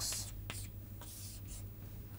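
Chalk writing on a chalkboard: a short scratchy stroke right at the start, then a couple of light chalk ticks about half a second and a second in, over a faint steady room hum.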